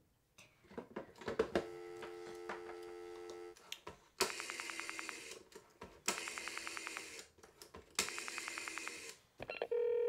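Rotary-dial telephone: the handset lifts off with a few clicks, the dial tone hums steadily for about two seconds, then three digits are dialed, each a whirring return of the dial with a rapid, even run of clicks. A new steady tone starts in the earpiece just before the end.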